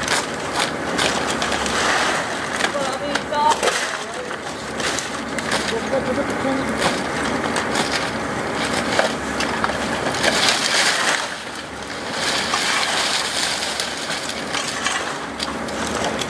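Broken hard-plastic crate scrap clattering and rustling as a woven plastic sack full of it is handled and tipped out onto a heap of crate pieces, making many irregular clacks and knocks.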